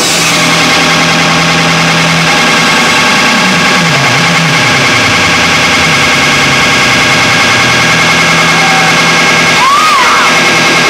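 Loud, sustained wall of distorted noise from a live rock band's amplified guitar, with no drum beat: many held tones at once, a low tone that drops out and returns, and a couple of wavering pitch glides, the last near the end.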